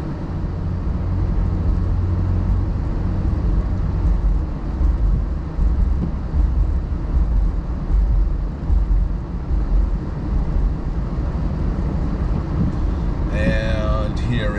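Steady low engine and road rumble of a car as heard from inside the cabin, as it pulls away and drives along. A man's voice starts just before the end.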